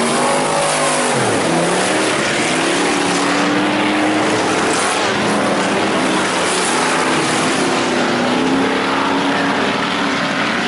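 IMCA Hobby Stock race cars' engines running hard on a dirt oval. One car passes close in the first second or so, its engine note falling as it goes by, then engine drone carries on steadily.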